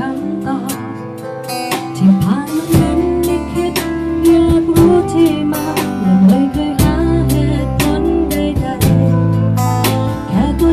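Live band playing a ballad: strummed acoustic guitar over held bass notes, with singing.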